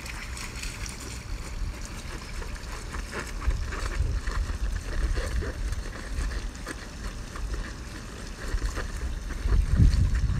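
Wind rumbling on the microphone over a steady hiss of running water, with scattered short slaps and splashes of bare feet and bodies on the wet plastic slide. The rumble grows louder near the end.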